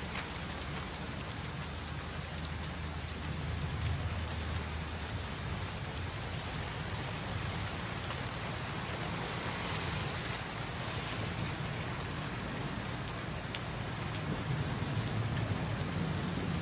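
Heavy rain falling steadily, an even hiss with no breaks.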